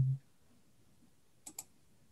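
Two quick clicks of a computer mouse, close together, about a second and a half in.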